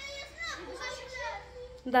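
Children's voices in the background, chattering and playing, quieter than a nearby adult voice.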